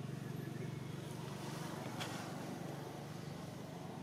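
Low, steady rumble of a motor vehicle's engine running in the background, with one sharp click about two seconds in.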